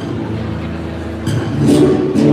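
Malambo footwork: a few sharp boot strikes on the stage, falling mostly in the second half, over a guitar accompaniment holding steady notes.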